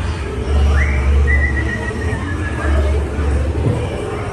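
A long whistle that rises quickly and is then held, sinking slightly, for about two seconds: an animatronic pirate prisoner whistling to the dog that holds the jail keys. Under it runs the steady low rumble of the ride's soundtrack.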